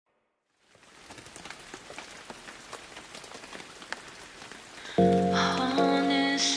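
Steady rain patter with scattered individual drops fades in. About five seconds in, music enters loudly with sustained chords over a bass line.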